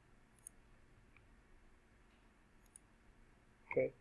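A few faint computer mouse clicks over quiet room tone: one about half a second in and a close pair near three seconds.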